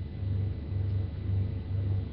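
A low, pulsing hum with faint hiss in a pause between recited lines.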